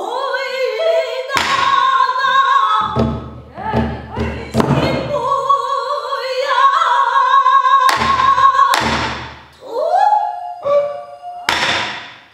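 A female pansori singer sings with long held notes and sliding, bending pitch. A buk barrel drum accompanies her with deep strokes: a single one early, a flurry of strokes in the middle, and more later on.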